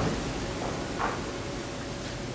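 Steady hiss of background noise, with one faint short sound about a second in.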